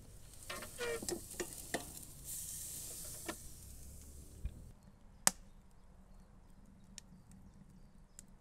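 Ribeye steak sizzling on a hot cast-iron grate inside a kamado grill as its lid is lifted, with clicks and metal scraping from the lid's band and hinge first; the sizzle cuts off about four and a half seconds in. A sharp click follows, then a few faint ticks.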